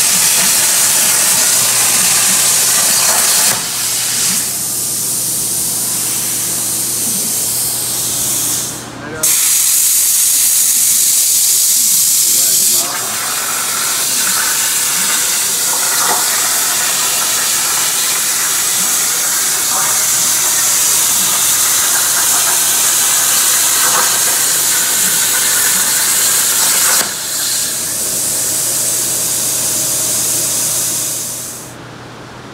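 Plasma cutting torch on a Piranha B-Series CNC plasma table cutting steel plate: a loud, steady hiss of the plasma arc and air jet, with a brief break about nine seconds in.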